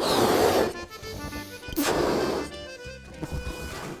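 Two long, forceful breaths blown into a latex balloon, about two seconds apart, inflating it to stretch the latex. Background music plays throughout.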